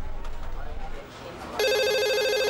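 A telephone ring, a loud trilling electronic ringtone that starts suddenly about one and a half seconds in, after a stretch of quiet background.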